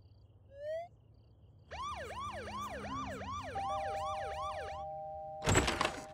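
Cartoon police siren wailing fast, about three rises and falls a second for some three seconds, with a steady two-note tone taking over near the end. A loud thump comes just before the end.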